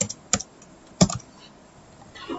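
Computer keyboard being typed on: a few separate keystrokes, the loudest about a second in.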